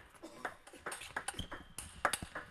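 Table tennis rally: a run of sharp clicks from the plastic ball striking the table and bouncing off the rubber-faced bats, several a second.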